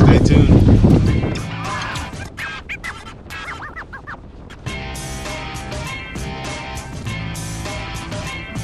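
Wind and boat noise on the microphone for about the first second, then an upbeat guitar-led background music track that settles into a steady beat about halfway through.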